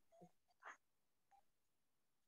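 Near silence: room tone, with a few faint short sounds in the first second.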